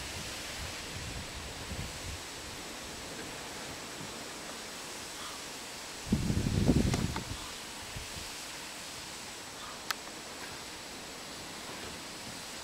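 Steady rustling hiss of outdoor wind, with a short low rumble of wind buffeting the microphone about six seconds in and a single sharp click near the end.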